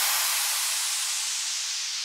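A wash of white-noise hiss left at the end of a bass house track after its beat and bass cut out, slowly fading.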